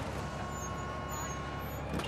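A ferry's engine running steadily, a low rumble, with a thin steady tone over it that stops near the end.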